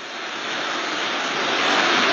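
A steady rushing noise with no pitch, growing louder throughout, like a passing aircraft heard at a distance.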